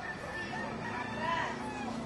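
A rooster crowing: one long call that rises and falls in pitch, over faint voices.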